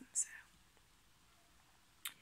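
A soft, breathy spoken "so" at the start, then a pause with only faint room tone.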